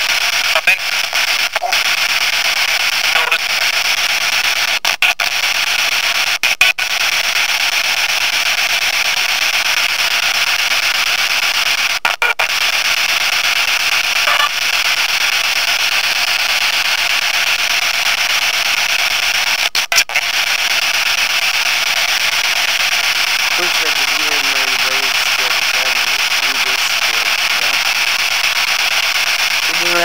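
Steady radio static hiss that cuts out briefly a few times, with faint voice-like fragments in the noise near the end. It is being listened to for a spirit message.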